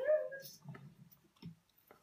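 A boy's excited, drawn-out shout ('is!') with a rising-then-falling pitch, followed by faint room noise and a couple of small clicks.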